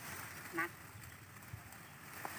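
A single short duck quack about half a second in, over a faint background.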